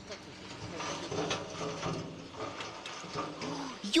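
Irregular clattering and knocking from a tipper semi-trailer as it tips a load of rubble, with stones starting to slide out of the raised body. A person cries out at the very end.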